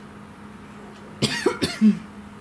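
A person coughing twice in quick succession, about a second in, ending with a short grunt.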